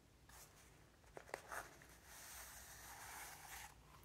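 Faint handling of a small ball of yarn in the hands: a few soft clicks about a second in, then a soft steady rustle lasting under two seconds.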